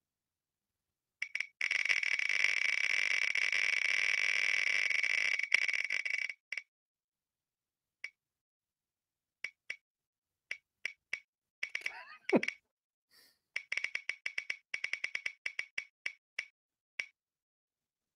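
Spinning Picker Wheel web app's tick sound effect: rapid ticks that run together for about five seconds, then thin out to scattered single ticks as the wheel slows, with a short falling swoop about twelve seconds in and another run of quicker ticks near the end.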